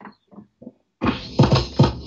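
Drum beat from a vinyl record being beat-juggled on two turntables through the crossfader. It opens with a pause holding a few faint short sounds, then the beat drops back in about a second in with several heavy hits, the start of the pattern again.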